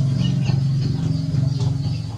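A steady low hum with faint, short high chirps now and then over it.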